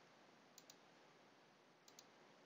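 Near silence with faint computer mouse clicks: a quick pair a little over half a second in and one more near the end, while an option is picked from a drop-down menu.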